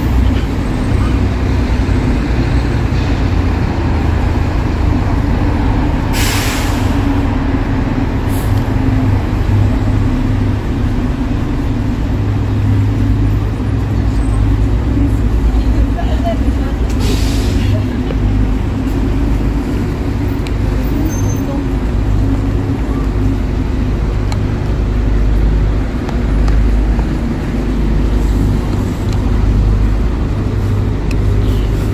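City traffic on a wet road: a steady low engine rumble from buses and cars, with two short air-brake hisses about six and seventeen seconds in.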